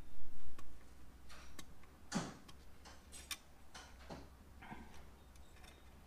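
Scattered small, irregular clicks and scratches of fingernails and fingers working heat-shrink tubing along thin wire leads at a small metal connector, loudest just after the start.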